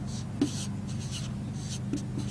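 Marker pen writing on a whiteboard: a series of short scratchy strokes as words are written, over a steady low hum.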